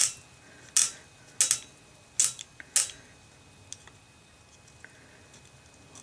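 Metal parts of a Beretta U22 Neos .22 pistol clicking and scraping in the hands as it is screwed back together: four short, sharp clicks in the first three seconds, then a couple of faint ticks.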